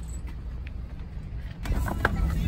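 Outdoor parking-lot ambience: a steady low rumble. About one and a half seconds in, handling noise rises as grocery bags in a shopping cart are grabbed and moved.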